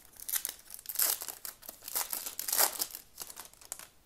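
Foil trading-card pack wrapper crinkling in several irregular bursts as it is handled and torn open by hand.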